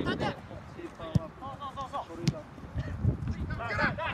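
Soccer players' scattered shouts and calls during play, with sharp thuds of the ball being kicked. The loudest kick comes about a second in.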